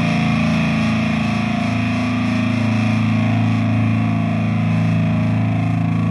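Death metal / hardcore band playing an instrumental passage: heavily distorted electric guitars holding low chords over bass and drums in a loud, steady, dense wall of sound.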